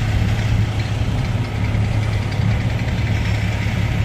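An engine idling, a steady low hum that holds level throughout.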